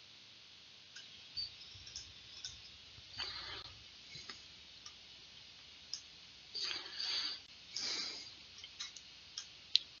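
Faint scattered clicks of a computer mouse as controls are selected and dragged on screen, with three short shuffling noises in between. The sharpest click comes just before the end.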